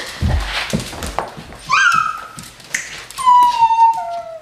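Pit bull-type dog whining during rough play: a short rising whine about two seconds in, then a longer whine that slowly drops in pitch near the end. Bumps and scuffles on the floor come at the start.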